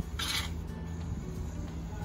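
Aerosol shaving cream can spraying foam, one short hiss near the start, over background music.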